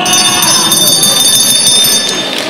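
Boxing ring bell ringing steadily for about two seconds, sounding the end of the final round, over a background of crowd noise.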